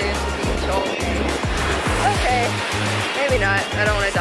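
Background pop music with a steady bass beat and a voice in it, with surf washing beneath.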